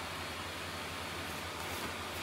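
Inflatable snowman lawn decoration's built-in blower fan running, a steady even hiss with a faint low hum that keeps the snowman inflated.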